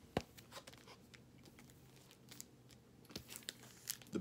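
Faint rustling and crinkling of a plastic record sleeve as vinyl LPs are handled and swapped, with a sharp click just after the start and scattered small clicks.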